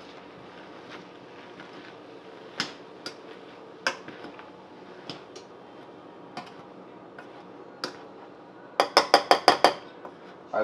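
A metal hand potato masher knocking against a stainless steel saucepan as soft boiled potatoes are mashed. There are scattered single clinks, then a quick run of about seven loud knocks near the end.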